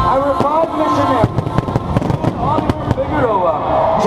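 A fireworks display going off in a dense, rapid string of sharp bangs and crackles, with voices heard over it.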